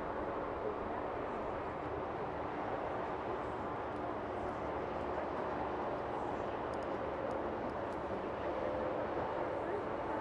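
Steady background noise with an indistinct murmur of voices and no clear breaks or single impacts.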